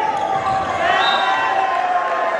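Volleyball rally: the ball being struck during a spike at the net, with sustained shouting from players and spectators that rises in pitch about a second in.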